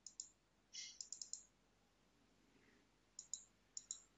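Faint computer mouse clicks: a few short ticks near the start, a quick cluster about a second in, and another few near the end, over near silence.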